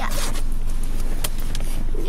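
A puffy winter jacket being unzipped by hand: a run of scratchy zipper rasps with a few short sharp ticks.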